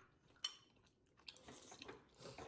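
Near silence, broken by one short click about half a second in and a few faint ticks near the end: a metal spoon and chopsticks touching a ceramic rice bowl.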